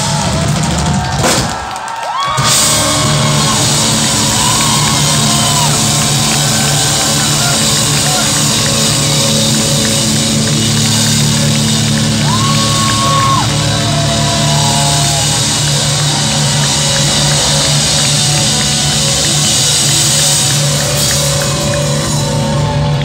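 Rock band playing live, with a drum kit and electric guitars, loud and dense. The music breaks off briefly about two seconds in, then the full band comes back in.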